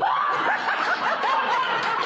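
High-pitched laughter breaking out suddenly and running on as a quick string of short squealing peals.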